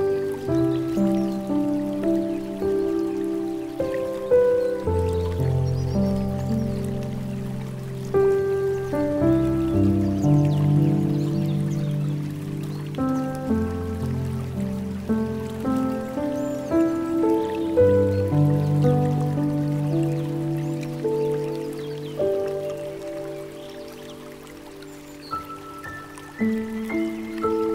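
Slow, gentle solo piano music, notes rung out one after another and left to sustain, over a soft sound of trickling water; it grows quieter near the end.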